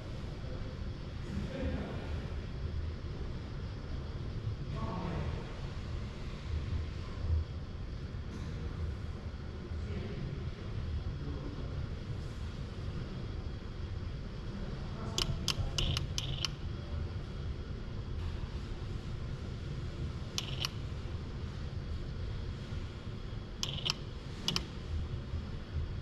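Steady low hum of the robot cell with a quick run of light metallic clicks a little past halfway and a few single clicks later, as the UR10e robot's gripper sets the removed centre nut down in its holder and releases it.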